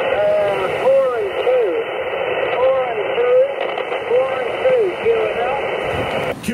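A distant amateur radio station's voice received on 40-metre single sideband through a Xiegu G90 transceiver's speaker, thin and narrow-sounding over a steady hiss of band noise. It is a weak contact the operator calls a struggle to copy.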